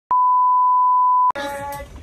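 A steady 1 kHz test-tone beep, the reference tone that goes with colour bars, held for just over a second and then cut off abruptly. The sound of a group of people follows.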